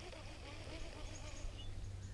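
Quiet outdoor river ambience: a faint steady low rumble with a few short, faint high chirps about halfway through.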